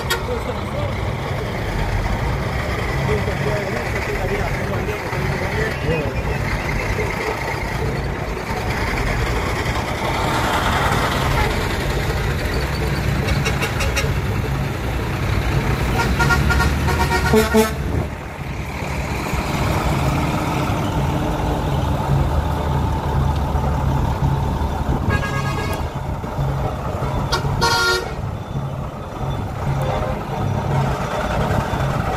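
Heavy diesel trucks idling with a steady low rumble, with truck horn blasts a little past the middle and twice more near the end.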